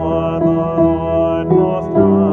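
A man singing a psalm setting, with sustained notes that change every half second or so, over keyboard accompaniment.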